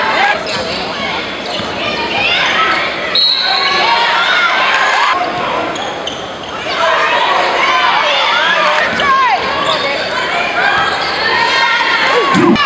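Live sound of a basketball game in a gymnasium: sneakers squeaking on the hardwood court and the ball bouncing, over the voices of players and spectators.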